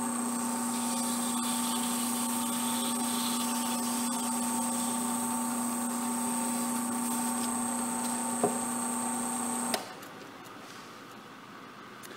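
Wood lathe running at a steady speed with a constant motor whine, spinning a small turned blank. A brief tick comes shortly before the sound cuts off abruptly near the end, leaving a low, quieter hum.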